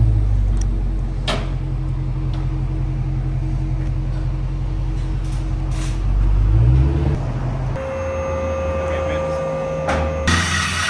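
Supercharged 6.2-litre HEMI V8 of a 2023 Dodge Charger SRT Hellcat Redeye on its stock exhaust, mufflers still in place, running at low speed with a low, steady rumble and a brief rise in revs about seven seconds in. The engine sound then stops, and a steady hum carries on near the end.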